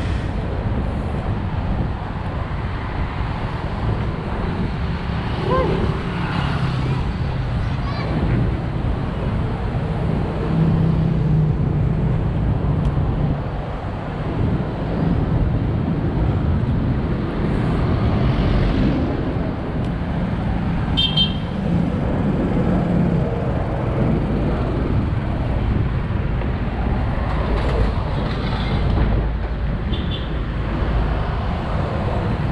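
Road traffic going by and steady wind rumble on the microphone of a moving bicycle. A short series of high beeps comes about two-thirds of the way through.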